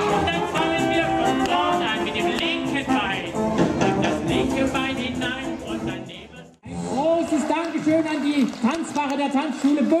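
Live Dixieland jazz band playing, dense and loud with wavering melody lines. It breaks off abruptly about two-thirds of the way through, and music with voices picks up again.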